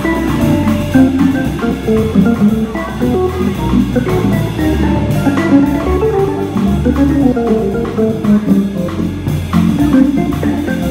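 Live jazz organ trio: a Viscount KeyB Legend Live organ with a Hammond-style tone plays a running solo line over bass notes from its pedalboard, with drums, cymbals and electric guitar accompanying.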